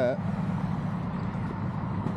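Motorcycle engine idling steadily with a low, even hum.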